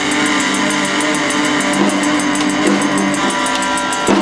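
A live duo playing: an electric guitar through an amplifier sustains ringing chords over a drum kit that keeps a quick, even beat.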